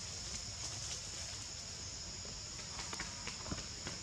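Steady high-pitched drone of insects in the surrounding vegetation, with a few faint sharp clicks and taps in the second half.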